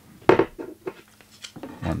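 Microphones and their hardware being handled: a sharp clack a quarter second in, followed by a few lighter clicks.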